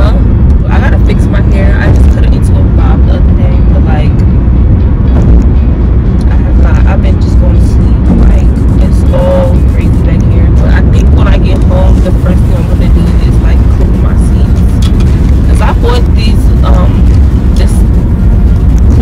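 Steady low rumble of a moving car's road and engine noise, heard inside the cabin, with a woman's voice faintly over it.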